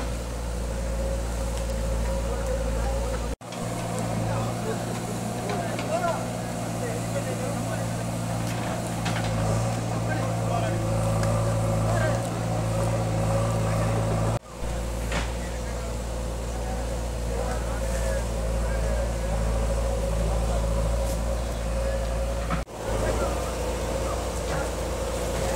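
A JCB backhoe loader's diesel engine running steadily, with people talking and calling in the background. The sound cuts out abruptly three times, briefly each time.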